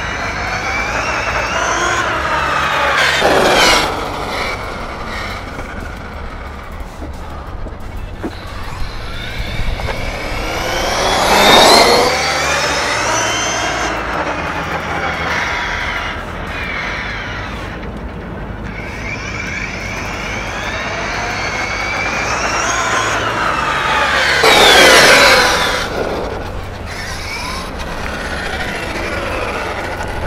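Losi LST 3XL-E 1/8-scale electric monster truck at full speed on asphalt, its brushless motor and drivetrain whining. Three passes, loudest about 3, 12 and 25 seconds in, with the whine rising in pitch as the truck approaches and falling as it goes away.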